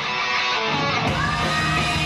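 Live rock band playing an instrumental passage, with electric guitar and bass guitar, recorded through a camera's built-in microphone.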